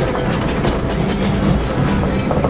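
Loud, steady rumbling vehicle noise with rapid, continuous rattling and clattering, like a vehicle or wagon rolling over a rough surface.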